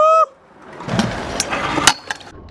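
Stunt scooter wheels rolling over skatepark concrete, with a few sharp clacks from the deck and wheels hitting the ground. A brief high-pitched cry, curving up then down, is cut off abruptly right at the start.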